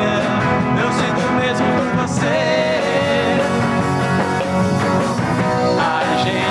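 A rock band playing a song in a 1970s rock style: a man singing at a microphone over electric guitar, bass and drums.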